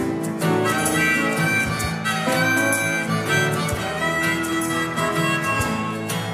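Instrumental break of a folk-rock song: acoustic guitar strummed steadily with piano, and a harmonica playing held melody notes over them.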